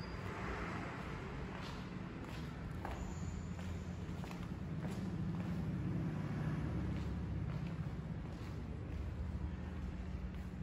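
Room ambience: a steady low hum, a little louder midway, with a few soft, irregular footsteps from the person filming as they walk back.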